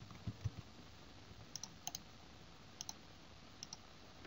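Faint computer-mouse clicks, coming in a few quick pairs, with a couple of soft low thumps near the start.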